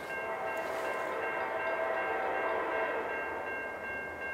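Locomotive air horn of an approaching freight train sounding a long, steady blast in the distance, fading near the end, over a steady high ringing.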